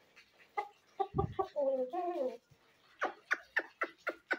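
Aseel chickens clucking in short calls, ending in a quick run of clucks at about four a second. A low thump comes about a second in.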